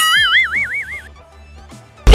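Comic cartoon sound effect: a sudden springy 'boing' tone that wobbles quickly up and down in pitch for about a second, then fades.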